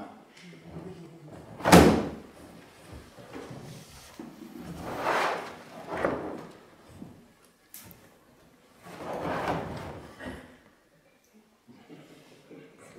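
A large hard plastic Hardcase drum case being tipped up and set back down. There is one sharp, loud knock about two seconds in, then two longer rushing, rubbing sounds around five and nine seconds in as the case is moved.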